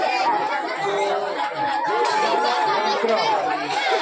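A bamboo transverse flute holding one long, steady note under the loud chatter of several people talking around it.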